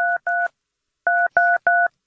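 Telephone keypad dialing: short two-tone DTMF beeps, all at the same pitch. There are two quick beeps, a pause of about half a second, then three more.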